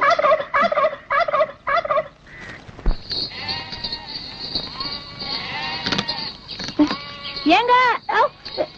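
A short repeating musical phrase ends about two seconds in. Then a herd of goats bleats, several long wavering calls with the loudest near the end, over a steady high-pitched whine.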